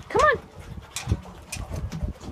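A dog gives one short, high-pitched whine that rises and falls just after the start, followed by soft low thumps and a few clicks.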